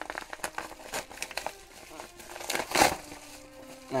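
A padded mailer envelope crinkling and rustling as a Blu-ray case is pulled out of it. There is a louder crackle about two and a half seconds in.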